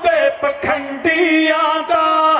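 Male voices singing a Sikh dhadi ballad in a chant-like style, accompanied by a bowed sarangi and small dhad hand drums. A long note is held in the second half.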